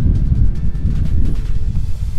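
Wind buffeting the microphone with a loud, uneven low rumble, over faint background music.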